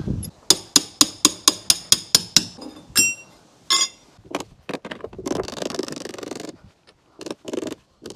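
Hand snips cutting a piece of lead for a clip: a quick even run of sharp clicks, about four a second. Two ringing metallic clinks follow as steel tools are set down on the stone coping, then a few light knocks and some scraping.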